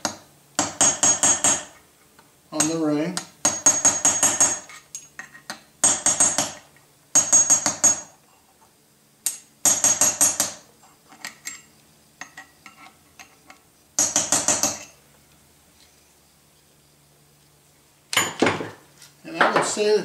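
Small hammer tapping a flathead chisel, metal on metal, in about six quick runs of rapid light strikes with a few lighter scattered taps between, driving a snap ring around its groove on an air pump's clutch hub to make sure it is fully seated.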